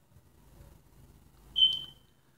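A single high-pitched electronic beep, about half a second long, sounding near the end over faint room tone.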